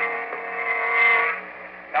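A short musical sting: one held chord that swells for about a second and then breaks off at about a second and a half.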